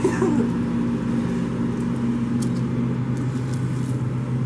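Steady low mechanical hum from commercial kitchen equipment. A brief vocal murmur comes at the very start, and a few faint clicks follow later.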